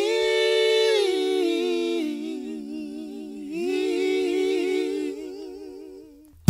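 Voices humming held chords a cappella, moving to a new chord about a second in, again at two seconds and once more past the middle, with a wavering vibrato in the later notes, then fading away near the end.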